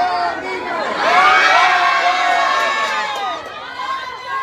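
A crowd of people cheering and shouting together, swelling about a second in and dying down near the end.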